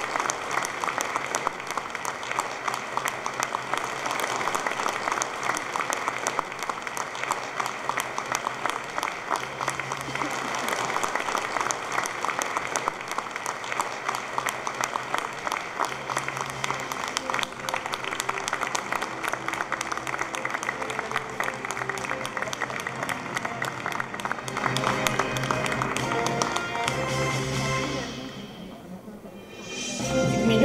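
Audience applauding with music playing over it; low bass notes of the music come through more clearly in the second half.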